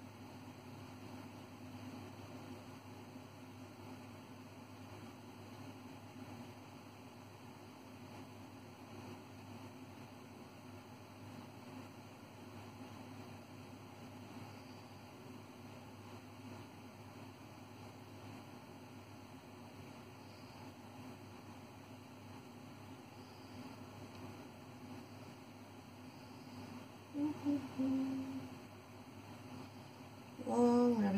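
Faint room tone with a steady low hum. Near the end a woman briefly hums a couple of notes.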